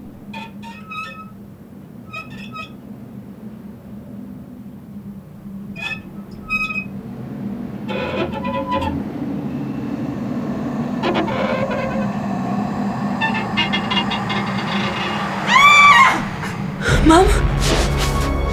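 Horror film score: a steady low drone with a few sparse chime-like ticks, swelling and thickening from about halfway through. Near the end comes a sudden loud shrill glide, then a heavy deep bass hit.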